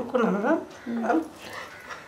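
A woman crying: two short, wavering sobbing cries in the first second and a half, then quieter.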